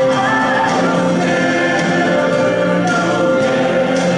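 Music with a choir singing long held notes.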